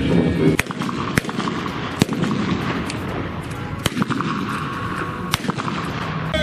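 A string of sharp bangs, about five spread unevenly over a few seconds, over a steady noisy background of an outdoor crowd.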